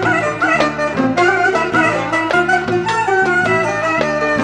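Instrumental passage of a Turkish Romani dance tune: a clarinet plays an ornamented, wavering melody over a steady rhythmic accompaniment.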